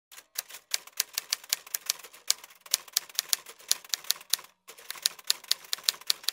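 Keys being typed: a fast, uneven run of sharp clicks, about seven a second, with one brief pause about three-quarters of the way through.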